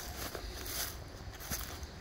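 Footsteps crunching and rustling through dry fallen leaves, in uneven swells of crackly noise.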